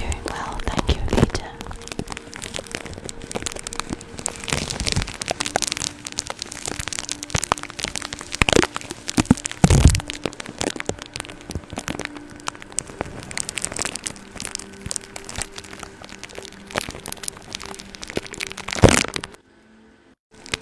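Tape on a microphone being rubbed close up by fingers and a makeup brush: dense crackling and crinkling with sharp clicks throughout, cutting out briefly just before the end.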